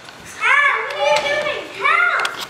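High-pitched children's voices calling out: a loud burst of exclamations about half a second in, and another near the end.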